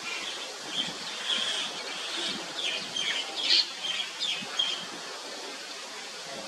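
Birds chirping: many short, high chirps in quick irregular runs, thickest in the middle, over a steady outdoor background hiss.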